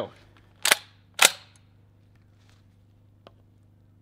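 Two sharp clicks about half a second apart, about a second in, and a faint tick near the end: handling noise from a Panzer BP-12 bullpup shotgun as it is brought up to the shoulder to fire.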